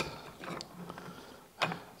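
Planetary gear set of a Zetor tractor's Multipower reduction unit being turned by hand, its steel gear teeth clicking and rattling faintly, with one sharper click near the end.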